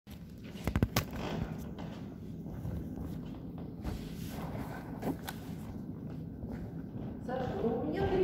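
Sharp clicks and knocks from a phone being handled and set in place, loudest about a second in, then scattered soft knocks and footsteps on a wooden stage floor over a low room hum. A man's voice starts near the end.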